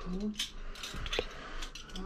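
A few light clicks and clinks of metal spoons and forks being handled, one ringing briefly about a second in, after a short murmur of a voice at the start.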